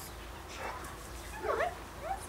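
Cairn terrier puppy giving a brief high-pitched whimper about one and a half seconds in.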